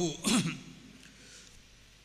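A man clearing his throat once, a short rough sound with a falling pitch, followed by a pause.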